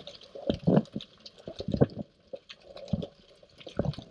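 Underwater sound over a coral reef: irregular gurgles and bubbling with scattered sharp clicks and crackles.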